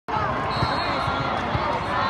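Many voices chattering in a large echoing hall, with several dull thuds of volleyballs bouncing or being struck.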